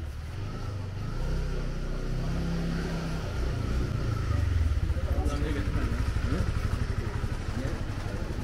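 A small motorcycle engine running close by with a low, pulsing note. It grows louder from about a second in, is loudest around the middle, and eases off toward the end, with brief voices of passers-by.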